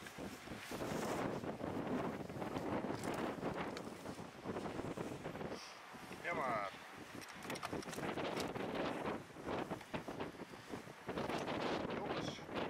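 Wind buffeting the microphone outdoors, with indistinct voices underneath.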